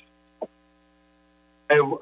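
A pause in a remote meeting's audio line: near silence with a faint steady electrical hum, and one brief short vocal sound about half a second in. A man starts speaking near the end.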